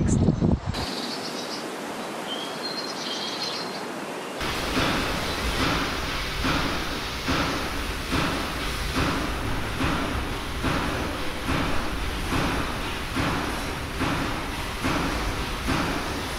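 Quiet outdoor ambience with a few faint high bird chirps. About four seconds in, a louder, fuller rushing noise sets in and swells in regular pulses under a second apart.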